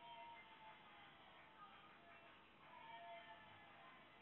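Faint cat meows, one just after the start and another about three seconds in, over faint background music.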